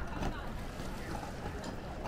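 Murmur of distant people talking over a steady low rumble of wind on the microphone.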